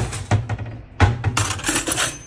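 Household noise played from a small portable speaker: a loud, dense hiss with a choppy low hum, broken by sharp knocks at the start and again about a second in.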